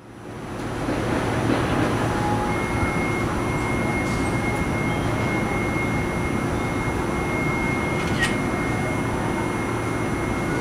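A tram approaching on street tracks: a steady hum and rumble, joined about two and a half seconds in by a thin, steady high whine. There is a single click near the end.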